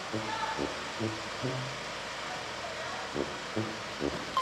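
Faint, brief speech in short snatches over steady background noise.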